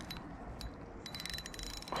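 A spinning reel ticking faintly and rapidly for about the last second, over a low steady hiss, while a hooked tench is played on ultralight tackle.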